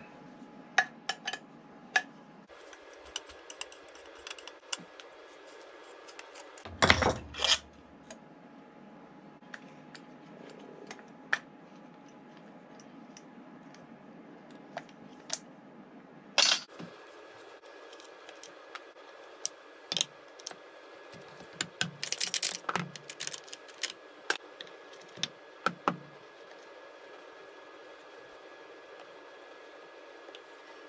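Hand tools and metal and plastic chainsaw parts clicking and clattering on a workbench during disassembly: scattered light clicks and clinks, with louder clusters of knocks about seven seconds in and again a little past twenty seconds, over a faint steady hum.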